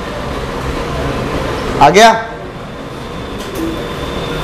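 A man's voice says a short phrase, "aa gaya", about two seconds in. Under it runs a steady background hiss and hum of room noise.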